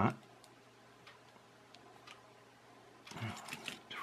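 A few faint, light clicks of a screwdriver bit working at a tiny screw in a toy car's plastic chassis, the bit not fitting the screw head well.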